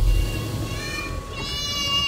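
A low rumble inside a car cabin fades over the first second, then a child's high-pitched calling from outside the open car window grows louder toward the end.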